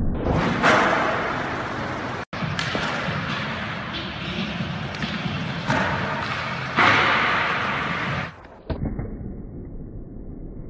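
Skateboard wheels rolling on a skatepark surface, with the board knocking and thudding on ledges and ramps. There are several sudden louder hits, about half a second in and again near the six- and seven-second marks, each fading off.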